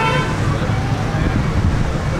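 Steady low background rumble, with a short high-pitched tone at the very start.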